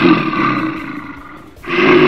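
Cartoon bear's roar sound effect, twice: the first roar fades out about a second and a half in, and a second loud roar begins just before the end.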